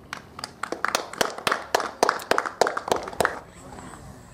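Scattered hand clapping from a small group, irregular claps for about three seconds, stopping shortly before the end.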